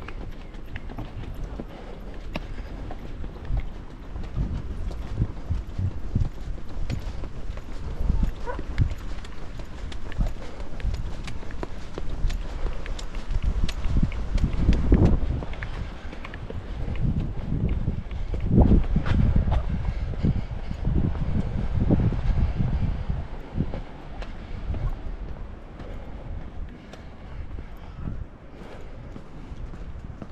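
Footsteps on a steep tarmac path, heard through a body-worn action camera, over a fluctuating low rumble of wind on the microphone.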